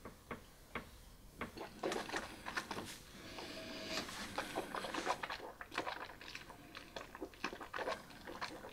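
Faint mouth sounds of a person tasting whisky: a sip, then small wet clicks and smacks as the spirit is worked around the mouth, with a soft breath in the middle.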